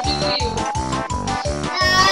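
Upbeat background music with a steady beat of about four pulses a second, and a wet cat meowing over it while being bathed.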